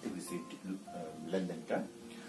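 A man's voice in two brief bits of speech over faint background music made of held tones.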